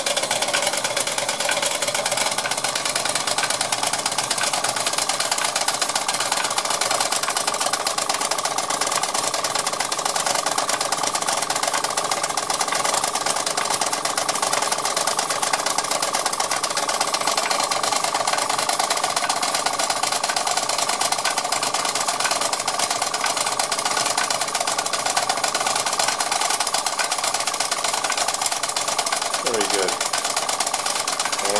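Model vertical steam engine running on compressed air and driving a 1930s Doll & Co tinplate mill by a drive line: a steady, fast mechanical clatter of the engine and the spinning mill wheel that does not change.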